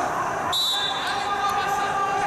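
A referee's whistle blast about half a second in, signalling the restart of the wrestling bout, over steady arena crowd voices.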